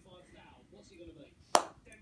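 A single sharp click about one and a half seconds in: a ping-pong ball being struck hard.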